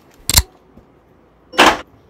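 Two brief handling noises from a doll being moved at a cardboard locker: a short knock about a third of a second in, then a longer scraping rustle near the end.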